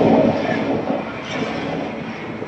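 Wind-simulator booth's blower fans driving a strong blast of air through a clear enclosed tube: a loud, steady rush of air, easing slightly about half a second in.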